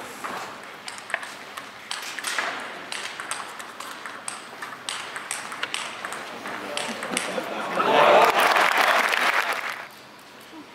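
Table tennis ball struck back and forth in a fast rally: sharp clicks of the ball on the bats and the table. About eight seconds in, the point ends and the crowd bursts into applause for about two seconds, the loudest sound here.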